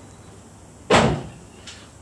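A single sharp knock from the car about a second in, with a short ringing tail.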